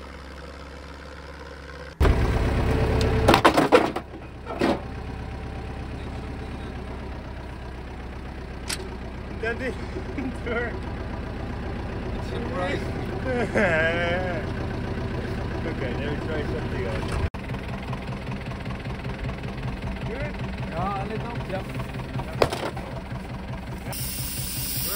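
A farm tractor's diesel engine running steadily, with voices over it. About two seconds in, a sudden loud burst of noise lasts a couple of seconds.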